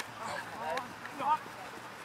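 Faint shouts of players' voices from across the field, a few brief calls in the first half.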